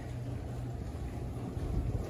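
Room tone: a steady low hum with a low rumble underneath, no distinct events.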